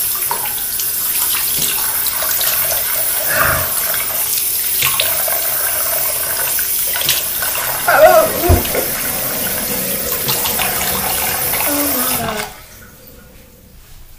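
Bathroom sink tap running steadily while a face is washed under it, with a few brief louder splashes and knocks around eight seconds in. The water is shut off suddenly about twelve seconds in.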